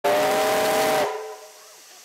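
Steam whistle of AD60-class Beyer-Garratt locomotive 6029, close by, sounding a loud chord of several notes with a rush of steam. It cuts off about a second in and dies away quickly.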